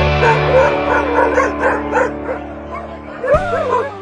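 Background music with long held tones, over which dogs yip and whine in a quick run of short calls, with a longer gliding whine near the end.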